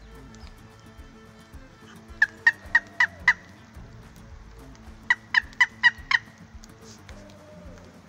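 Turkey call sounding hen yelps: two loud runs of five short, sharp yelps, evenly spaced, a few seconds apart.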